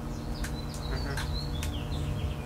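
Small birds chirping: a quick series of short, high calls and little falling sweeps, over a steady low hum.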